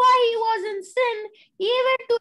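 A boy speaking in a high voice, with a short pause just after the middle.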